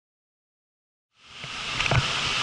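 Silence, then about a second in a steady rush of air with a low hum fades in: the blowers and heaters of a bed-bug heat treatment running. A single thump near the end.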